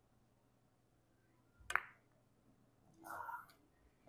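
Carom billiards shot: one sharp click about two seconds in as the cue tip strikes the cue ball, in an otherwise quiet room.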